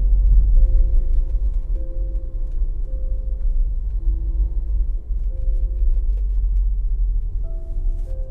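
A loud, steady low rumble like a train running, under soft slow music with held notes that change every second or so.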